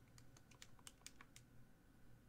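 Faint key presses, about eight quick, irregular taps: a calculation being keyed in to check a sum.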